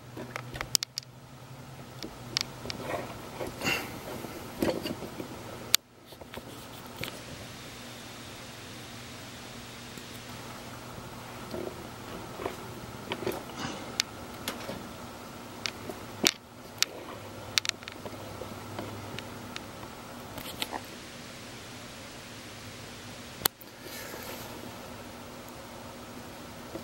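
Steady low hum of room tone with scattered clicks and knocks from handling, and a few sharp clicks.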